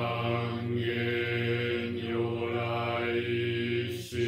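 A single man's voice chanting in a low, steady monotone, holding one pitch through the whole phrase with only the vowel sounds shifting.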